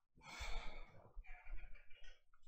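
A person sighing: one breathy exhale, about half a second long, close to the microphone.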